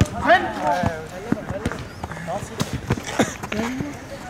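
Football being kicked on an artificial-turf pitch: a scatter of short, sharp thuds of the ball among players' shouts.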